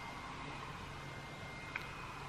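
Quiet indoor room tone with a faint steady high whine, and one small click near the end.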